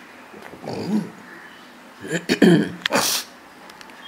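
A woman's voice between read passages: a soft breath or throat noise about a second in, then a brief muttered word or two near the middle.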